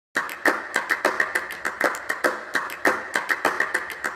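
Applause from a small audience, the separate claps distinct and coming several a second.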